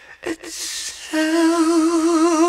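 A slow ballad recording: after a brief quiet dip with a soft hiss, a male voice begins a long held note with steady vibrato about a second in.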